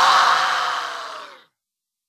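The final held chord of a metalcore song ringing out and fading away, cut to silence about one and a half seconds in.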